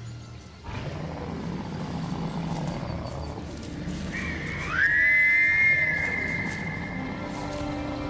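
A bear whistle is blown. A short peep comes first, then a long shrill blast that swoops up in pitch and holds steady for about a second, sounding as two close tones, with a fainter tail after it. It is blown to warn bears off and avoid surprising one.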